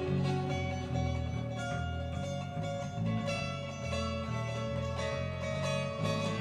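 Steel-string acoustic guitar and electric bass playing an instrumental passage together. The bass moves from note to note beneath plucked guitar notes.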